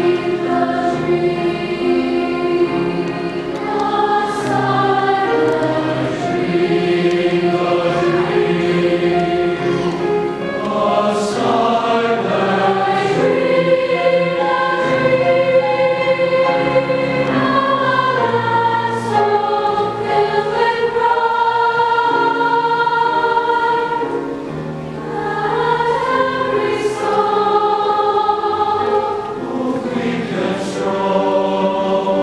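Large mixed choir singing in harmony in long held chords, with the sung 's' sounds cutting through sharply a few times. It eases off briefly about 25 seconds in.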